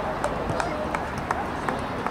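Indistinct voices of players and spectators calling out across an open soccer field, over a steady low rumble, with a few short clicks scattered through.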